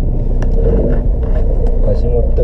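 Inside a car's cabin while driving: a steady low rumble of engine and road noise, with a few sharp clicks.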